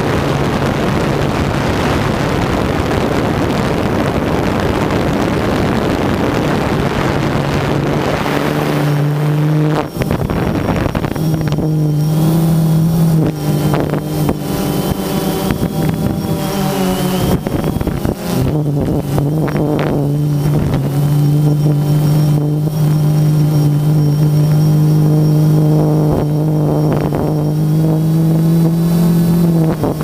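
Quadcopter drone's propellers and motors humming, heard from the camera on board. Wind noise buries it for the first several seconds, then a steady hum with a clear pitch comes through, wavering briefly around the middle and rising slightly near the end.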